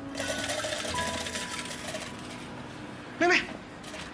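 A dense metallic clatter of game tokens pouring out of an arcade token machine for about two seconds, then stopping. Soft background music plays under it, and a short vocal sound comes near the end.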